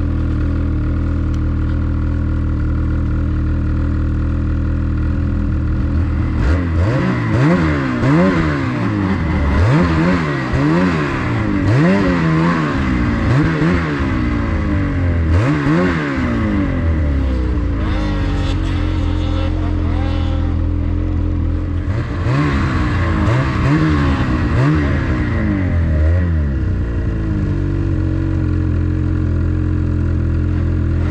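Snowmobile engine idling steadily, then revved over and over, its pitch climbing and dropping about once a second for roughly ten seconds. It steadies, is revved in another short run, and settles back to a steady run near the end.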